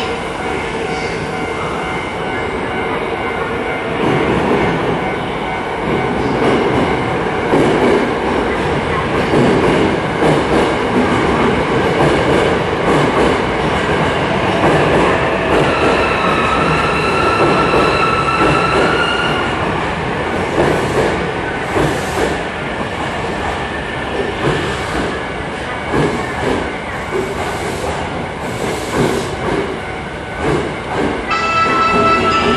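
Hankyu electric train pulling into an underground station platform: a rumble that swells about four seconds in, a high squeal for a few seconds around the middle, then wheels clacking over the rails as the train slows past.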